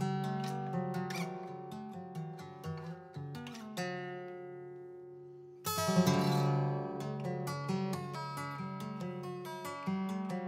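Solo acoustic guitar played fingerstyle in a math-rock piece: picked notes ring over one another and slowly fade, then a loud chord strikes a little past halfway and a quick run of picked notes follows.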